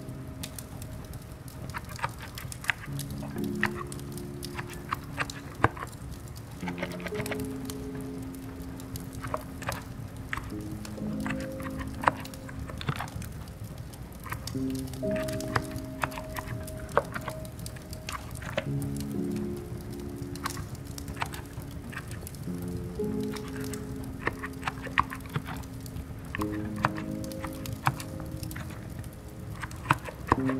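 Irregular soft keystrokes on a quiet contactless (electrostatic-capacitive) keyboard, typed slowly, over slow ambient music with long held low notes.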